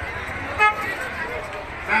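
A single short vehicle horn toot about half a second in, over steady street noise.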